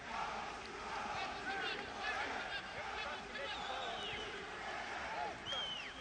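Football stadium ambience: a steady hiss with scattered distant shouts and calls.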